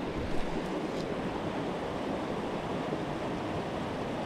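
Steady rush of a rocky river running high, water pouring over rapids and boulders.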